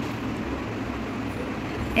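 A steady rumbling noise with a hiss over it.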